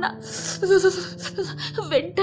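A woman's breathy sigh, followed by a few short wordless voice sounds that fall in pitch near the end, over soft background music.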